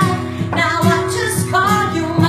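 A woman singing a country song, accompanied on acoustic guitar.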